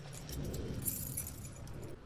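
Light jingling and clinking of small hard objects, a quick cluster of rattles about a second in, over a low steady hum.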